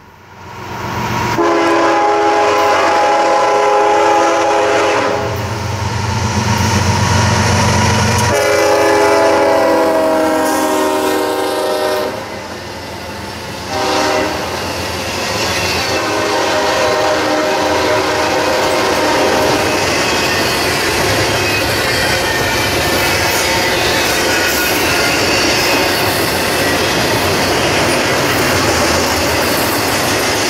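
Freight train of three diesel locomotives sounding a multi-chime air horn in long blasts and then a short one as the engines approach and pass, with a deep engine rumble as they go by. After that comes the steady rolling noise and clatter of double-stack container cars' wheels on the rails.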